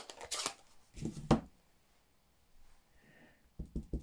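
Paper and stamping tools handled on a desk. There is a sharp click, then two short rustles with a knock, a quiet stretch, and a quick run of small taps near the end.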